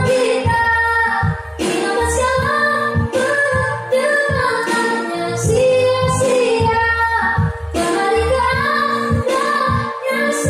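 A girl singing a slow Indonesian pop ballad solo into a handheld microphone, her voice rising and falling in long sung phrases over instrumental accompaniment with a steady low rhythmic part.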